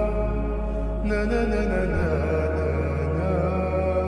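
Background music: sustained, drone-like tones over a held low bass note that shifts pitch about halfway through.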